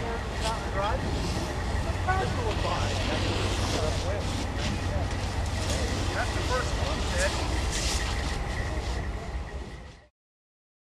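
Steady low engine rumble at a fire scene, under the hiss of a fire hose spraying and indistinct shouting voices, with a few sharp knocks; the sound fades out near the end.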